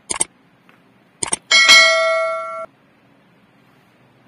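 Two quick double mouse-clicks, then a bright bell ding that rings for about a second and cuts off abruptly: a subscribe-button notification sound effect.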